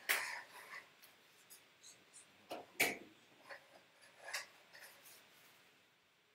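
Scattered handling noises at a desk: short clicks, knocks and rustles. The sharpest click comes about three seconds in, and the noises thin out toward the end.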